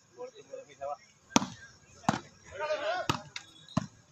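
A volleyball struck by hand in a rally: four or five sharp slaps about a second apart, the first the loudest, with shouting voices between them.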